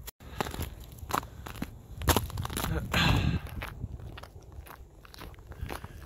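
A hiker's boots crunching step by step on a frozen, leaf-strewn trail, the steps irregular and uneven in loudness.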